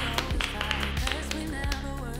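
Background music with deep bass and a steady beat.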